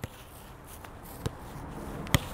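Soccer ball being struck during passing on grass: a couple of short, sharp kicks about a second apart, the second the louder, over faint outdoor background.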